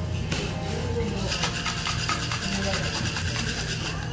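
Ice rattling inside a tin-and-glass cocktail shaker being shaken hard, in a quick, even rhythm that starts about a second in, over background music.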